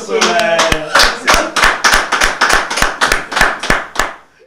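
Hand claps in a steady rhythm, about three a second, close to a microphone, with a voice over the first second. The clapping stops abruptly at the end.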